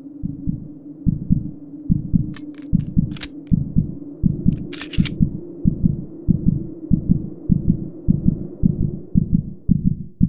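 Logo-intro sound design: a low steady drone under deep bass pulses, about two a second, coming closer together near the end. A few sharp metallic clicks and a short bright hiss sound between about two and five seconds in.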